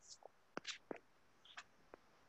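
Near silence, with a few faint, very short clicks and soft sounds scattered through it.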